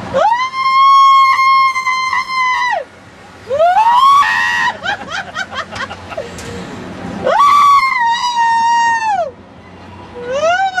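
Three long, high-pitched screams. Each one slides up, holds, then drops away. The first lasts about two and a half seconds and the last about two seconds.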